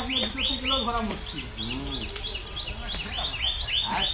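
A bird calling a rapid, steady series of short chirps, each falling in pitch, about five a second.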